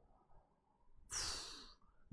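A person's single breathy sigh, about a second in, lasting under a second and trailing off.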